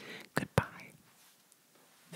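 A breathy whisper with two sharp clicks close together, about a quarter second apart, in the first second.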